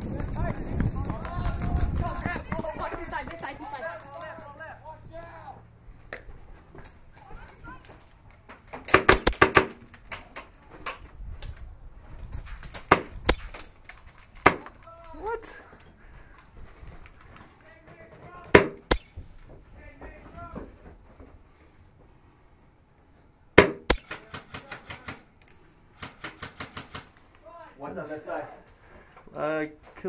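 Airsoft guns firing: sharp cracks in a quick string of about half a dozen shots, single shots between, and another run of evenly spaced shots near the end, with voices calling out.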